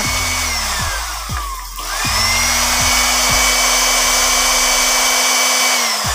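Small electric blender motor running bare in its opened base with a high whine. It winds down about a second in, spins up again soon after, runs steadily and winds down near the end. The motor works: the blender's dead fault was only its on/off switch, which had come loose from its mount.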